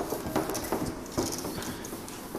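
Marker knocking and scraping on a whiteboard while writing: a run of short, sharp taps at an uneven pace.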